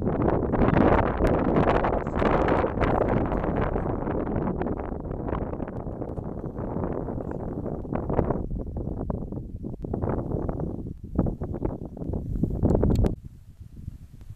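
Wind buffeting the microphone: a loud, rushing rumble that rises and falls in gusts and drops away near the end.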